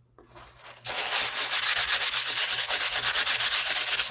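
Fast back-and-forth scrubbing of a crumpled white wipe on a painted paper page, many strokes a second. It starts softly, turns loud about a second in, and stops at the end.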